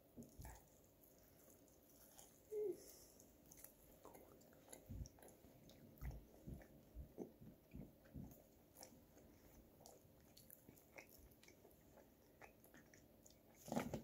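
Faint chewing of saucy chicken wings: soft, wet mouth clicks and smacks scattered through near quiet.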